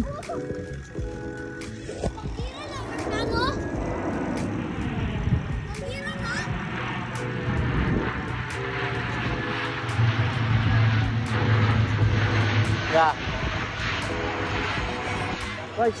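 Propeller airplane flying overhead, its engines droning low and steady, loudest about two-thirds of the way through.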